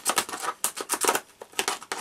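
Quick run of sharp plastic clicks and snaps, about a dozen in two seconds, as a Blu-ray case is worked open with the claw of a claw hammer.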